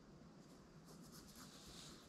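Faint scratchy rubbing of hands handling a camera rig, starting about half a second in.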